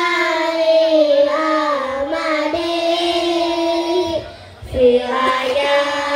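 A large group of children singing together in long, held notes, with a brief breath pause about four seconds in before they carry on.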